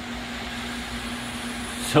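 GPU mining rig's cooling fans and server power-supply fans running steadily just after the rig is powered on: a constant rush of air with a low steady hum underneath.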